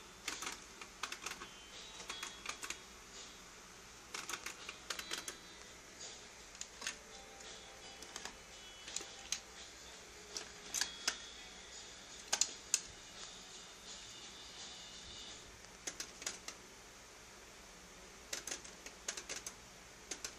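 Aiwa NSX-999 mini stereo's double cassette deck: irregular clicks and clunks from its front-panel buttons and tape mechanism as the decks are worked, in short clusters.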